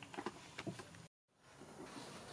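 A few short squeaks from a baby macaque in the first second. The sound then cuts out completely for a moment and comes back as faint outdoor background noise.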